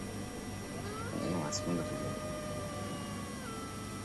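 Faint eerie background sound bed under a pause in the talk. A long, drawn-out tone glides up about a second in, holds for roughly two seconds, then falls away.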